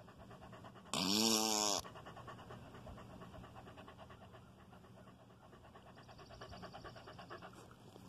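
A dog panting rapidly, open-mouthed with its tongue out, right at the microphone. A short voiced sound, rising then falling in pitch, cuts in about a second in.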